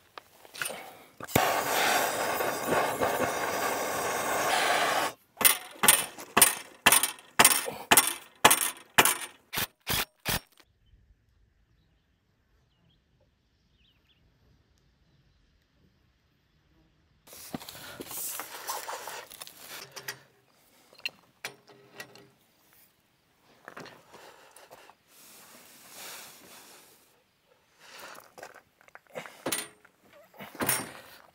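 Crushed stone and dirt rattling around the base of a newly installed frost-free yard hydrant in its trench, then about ten sharp strikes, roughly two a second, as a long steel bar tamps it down. Lighter, scattered knocks and clatter follow later.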